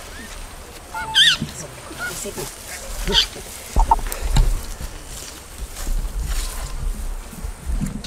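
Bonobos giving a few short, high-pitched calls that rise and fall in pitch, the first and loudest about a second in.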